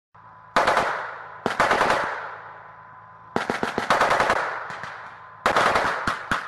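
Machine-gun fire in four short bursts, each a rapid string of shots followed by a long echo, over a low steady engine hum.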